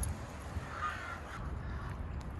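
A crow caws once, just under a second in, over a steady low rumble.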